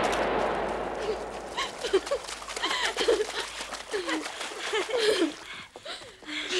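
The echoing tail of a shotgun blast fading away over the first two seconds, followed by a string of short, yelping cries.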